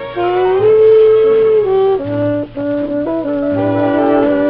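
Dance-orchestra music with wind instruments holding long chords that move to new notes every second or so, dipping briefly just past the middle.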